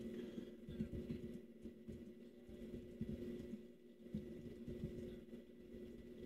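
Faint room tone: a low steady hum with scattered soft, low thuds.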